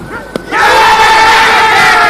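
A sharp knock, then from about half a second in several cricket fielders shout together, loud and sustained, as they go up in an appeal.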